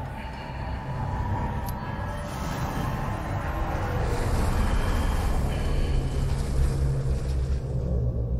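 Fantasy-drama sound effect for a magic spell: a deep continuous rumble, joined about two seconds in by a rushing whoosh that swells and grows louder towards the end.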